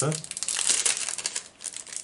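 Packaging crinkling as it is handled in the hands, a dense run of crackles that thins out about a second and a half in.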